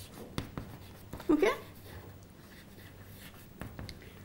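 Chalk writing on a chalkboard: a string of short taps and scratches as letters are written.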